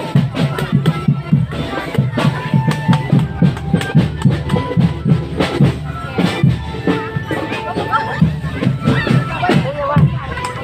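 Marching drum band playing a fast, even beat on bass drums and snare drums, with held melody notes over it and crowd voices.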